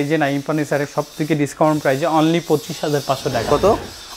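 Speech only: a man talking in Bengali.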